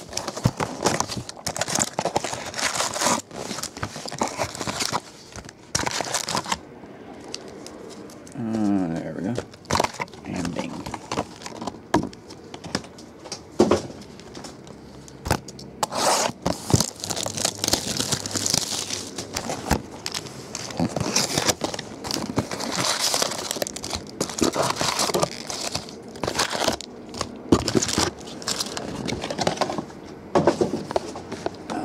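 Plastic shrink wrap being torn off boxes of baseball cards, and foil card packs crinkling as they are handled and stacked: a busy run of crinkles and rips with short pauses.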